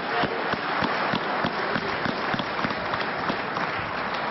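Members of parliament applauding steadily, many hands clapping together.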